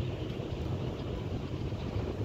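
Steady low rumble of a car ferry under way, mixed with wind buffeting the microphone on the open deck.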